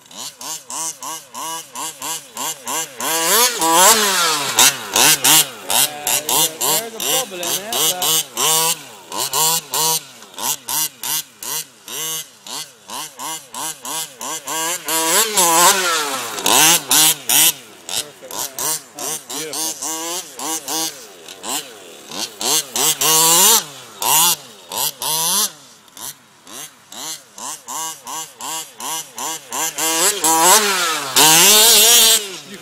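Two-stroke petrol engine of a large-scale RC buggy revving in short bursts, its pitch climbing and falling several times as the throttle is blipped on and off.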